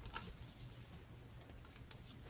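Faint rustling and a few light clicks as a vinyl LP in its paper inner sleeve is slid out of its record jacket.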